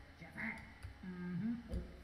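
Two short, faint hummed 'mm-hmm'-like sounds from a man's voice, with a few soft clicks.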